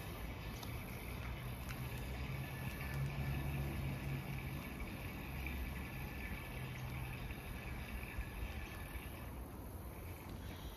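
Quiet background with a low rumble that swells around the middle and fades again, over a faint steady high hiss, with a few faint ticks.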